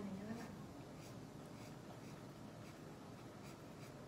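Felt-tip marker rubbing on paper in faint, short repeated strokes as an area is colored in.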